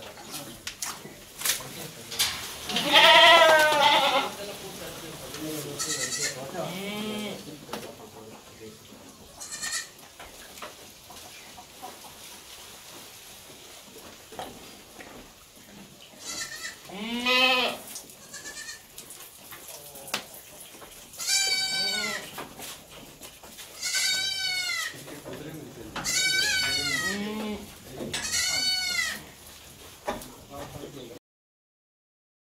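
Goats bleating, about eight separate calls from several animals. The loudest comes about three seconds in, then there is a quieter stretch, and the bleats come again every two to three seconds in the second half.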